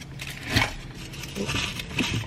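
A few light clicks and rustles of handling over a faint, steady low hum.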